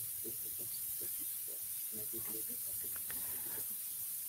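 Steady hiss from a video call's audio, with faint, muffled traces of a voice too quiet to make out underneath: a participant whose speech is coming through as not audible.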